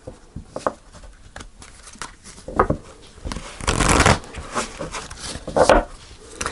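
A deck of oracle cards being shuffled by hand: a series of short papery rustles and card slaps, the longest and loudest about four seconds in, with another burst near the end.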